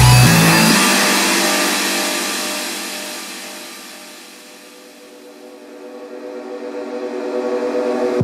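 Electronic dance music build-up: the bass drops out and a wide wash of sound fades away, then steady tones with a pulsing swell grow louder toward the drop.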